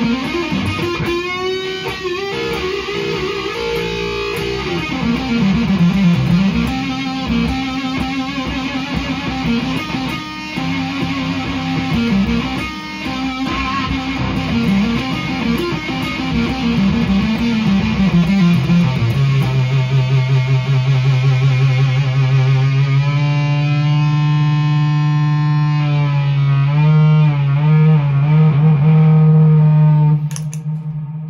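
ESP LTD electric guitar played through an Onkel Amplification Death's Head fuzz pedal (Russian germanium transistors and a 12AU7 preamp tube): a heavily fuzzed lead line with string bends and wavering pitch. About two-thirds of the way in it settles on one low note, held and sustained with vibrato to the end.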